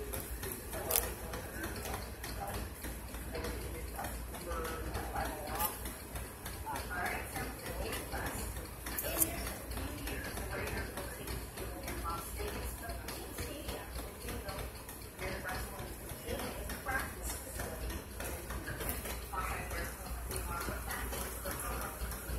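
Indistinct conversation in the background of a room, over a steady low hum, with a few sharp clicks about one, six and nine seconds in.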